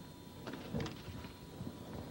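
Tennis ball struck by a racket on a serve about half a second in, answered by a louder racket hit on the return, then a few fainter ball bounces or hits.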